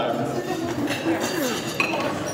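Dishes and cutlery clinking over the chatter of a crowd of diners.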